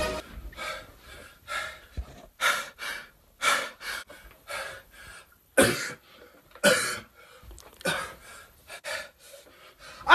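A person's sharp, breathy huffs or gasps, about one a second, with short quiet gaps between them.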